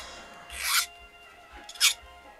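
Two strokes of a jeweller's hand file rasping across a small piece of metal jewellery, about a second apart, over faint background music.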